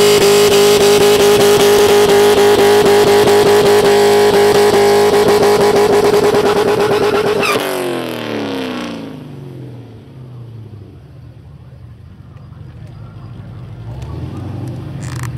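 Holden SS V8 held at high, steady revs through a burnout, the rear tyres spinning in clouds of smoke. About seven and a half seconds in the revs drop and the car pulls away, its engine note falling and fading as it goes down the strip.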